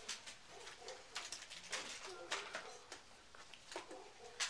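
Gift wrap and toy packaging being handled, crinkling and rustling in short bursts, with faint voices behind.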